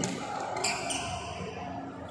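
Indoor badminton play: a low thud right at the start as a player lunges, then two sharp strikes close together a little over half a second later, echoing in a large hall.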